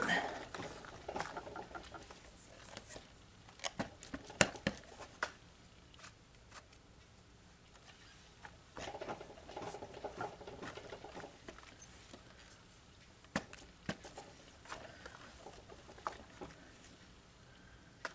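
A hand pressing and rubbing a rubber stamp down onto card stock in a stamp-positioning tool: soft scratchy rubbing with a few sharp clicks and taps, among them a pair near the start and another near the end.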